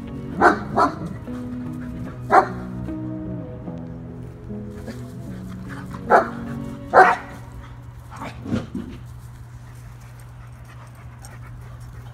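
A dog barking in short single barks, about seven in all, in two clusters near the start and around six to eight seconds in, over a music track with held notes and a steady bass.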